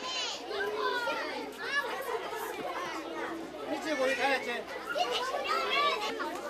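A crowd of young children talking and calling out at once, many high voices overlapping in a busy chatter.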